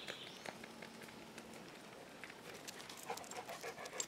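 Faint sounds of dogs moving about on a dirt driveway: a dog panting quickly, clearest in the last second or so, with light ticks and scuffs of paws on the ground.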